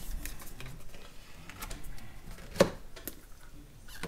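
Small clicks and taps of nail-stamping tools handled against a metal stamping plate, with one sharp click about two and a half seconds in.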